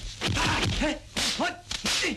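Kung fu film fight sound effects: a fast run of dubbed punch, slap and swish hits, several a second, mixed with short grunting shouts from the fighters.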